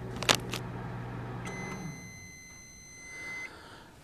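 Admiral microwave oven running with a low hum, then a single long beep of about two seconds as it shuts off, signalling that the one-minute heating cycle is finished.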